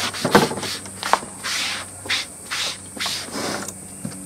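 Leather dye being rubbed onto a leather belt with an applicator: a series of short rubbing swishes, with a couple of light clicks between them.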